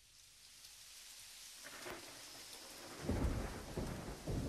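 Rain falling, fading up from quiet, with a deep rumble of thunder coming in about three seconds in.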